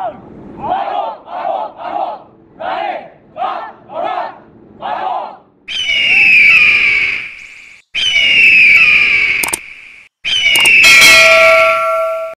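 A group of cadets shouting a chant in unison, in short clipped syllables about two a second. Then three loud, long screeches, each falling in pitch, come in about six seconds in, and a ringing chime joins the last one.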